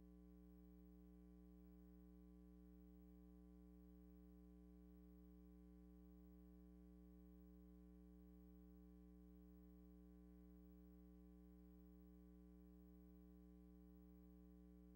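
Near silence with only a faint, steady electrical hum: a low buzz made of several unchanging tones that runs without any change.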